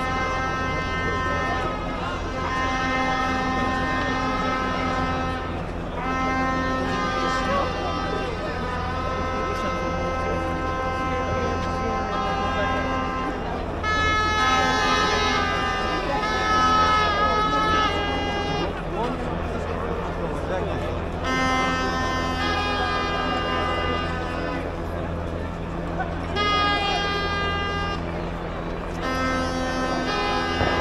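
Horns blown by a marching crowd in long held blasts of several seconds each, with short breaks between them and the loudest stretch about halfway through, over crowd noise and a steady low hum.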